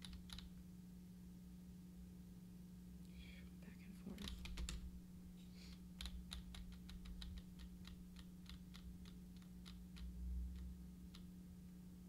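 Computer keyboard typing: a fast run of keystroke clicks, starting about four seconds in and running for several seconds, as a stock ticker symbol is keyed in. A steady low electrical hum sits underneath.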